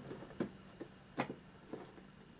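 A few light clicks and taps of hard plastic as the wall sections of a Faller H0 plastic building kit are seated together, the loudest a little past a second in.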